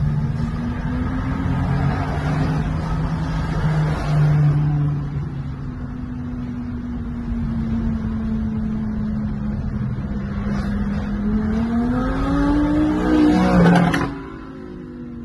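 Engine note of passing sports cars heard from inside a moving car, over road noise. The tone holds fairly steady, then climbs in pitch and loudness over the last few seconds as a white supercar accelerates alongside, and it cuts off suddenly at the end.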